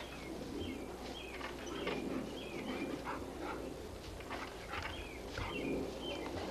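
A dog's sounds at close range, with scattered short clicks and faint high chirps.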